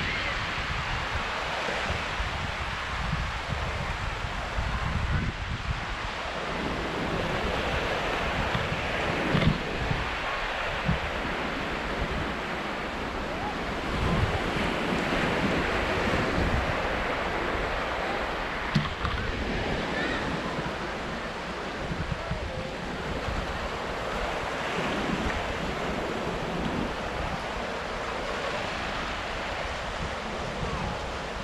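Wind buffeting the microphone over the steady wash of small waves on a sandy shore, with a few brief knocks.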